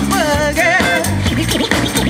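Live band music with a DJ scratching a record on turntables, quick sliding pitches in the first second over bass and drums.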